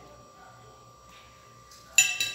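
Knife and fork clinking once against a ceramic plate while cutting sausage, a sharp click with a brief ring near the end, after a stretch of quiet room sound with a faint steady hum.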